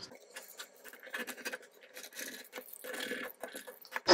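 Faint, irregular scratchy rustling of fingers pressing, tugging and sliding over taut monofilament polyester screen mesh, with small light clicks.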